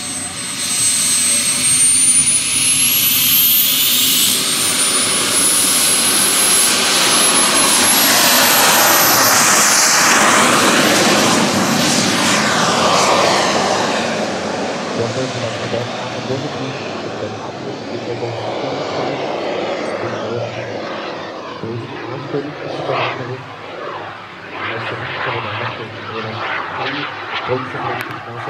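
Kerosene turbine engine of a large-scale radio-controlled Hawker Hunter model jet spooling up to full power for takeoff, its high whine rising steeply over the first few seconds. A loud jet rush follows as it accelerates past, falling in pitch, then fades as the jet climbs away.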